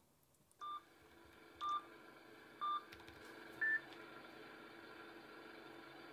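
Four short electronic beeps, one a second, the first three at the same pitch and the fourth higher, like a countdown. A faint steady hum runs under them.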